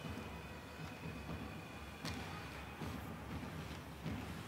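Ice hockey arena background during play: a steady low noise of the rink and crowd, with a sharp knock about two seconds in.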